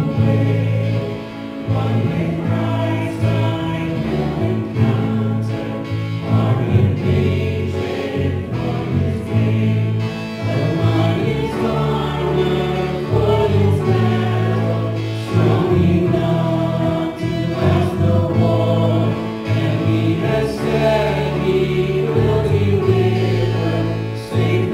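A church worship team singing a song together, with several voices over piano and guitars and a strong, steady bass line.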